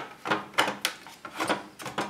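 A run of sharp clicks, knocks and scrapes as a WD Red 3.5-inch hard drive is pushed down into the plastic and metal drive bay of a Synology DS218play NAS and snapped onto its SATA connector.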